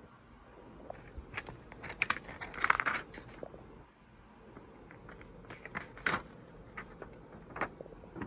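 Plastic DVD case and its paper inserts being handled. There are scattered clicks and a short paper rustle, busiest between one and three seconds in, then a second cluster of clicks around six seconds.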